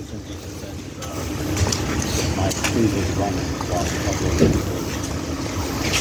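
A parked police cruiser's engine idling, a steady low rumble that grows louder about a second in, with wind noise on the microphone.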